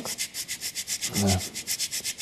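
Flat metal file rasping back and forth in quick, even strokes, about ten a second, deburring a sawn edge of a clip, with both sides of the edge filed at once.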